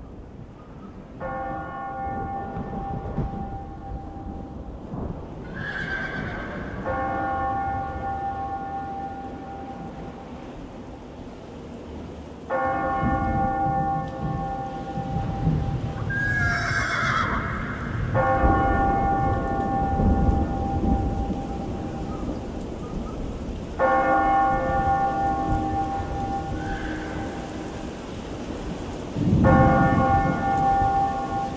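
A deep bell tolling slowly, one stroke about every five and a half seconds, each left to ring out. A horse whinnies twice between the strokes, over a low rumble like distant thunder.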